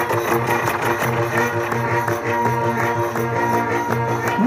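Instrumental passage of live Egyptian religious folk music (madih): sustained melodic notes over a steady hand-drum beat, with no singing.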